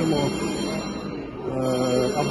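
A man's voice: a phrase trailing off, then a drawn-out hesitation sound held on one steady pitch near the end, before speech picks up again.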